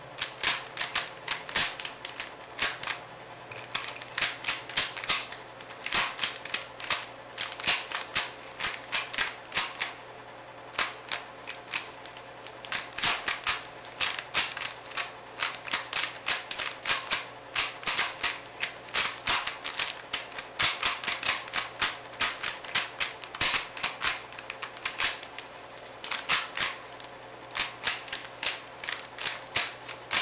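Plastic Rubik's Cube layers being turned rapidly in a speed solve: fast runs of clicks and clacks, broken by short pauses.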